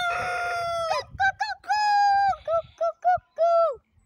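Rooster crowing: a long held crow that ends about a second in, followed by a run of short notes broken by two more long held notes, the last falling away near the end.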